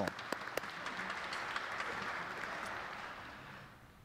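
Congregation applauding, many hands clapping together, fading out over the last second and a half.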